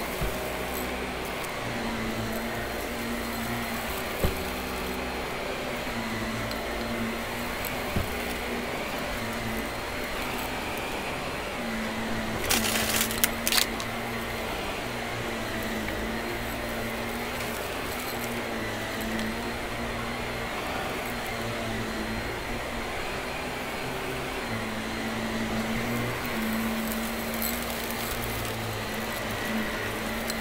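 Shark upright vacuum cleaner running on a carpet mat, its motor hum wavering every second or two as it is pushed back and forth. About halfway through there is a brief spell of crackling as debris is sucked up.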